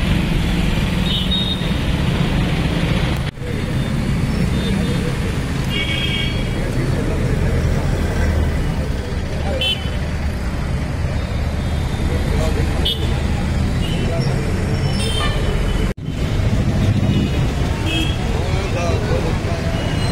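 Road traffic and vehicle engines running close by, with short horn toots several times. The sound breaks off for an instant twice.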